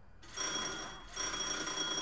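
Electric doorbell ringing twice: a short ring, then a longer one.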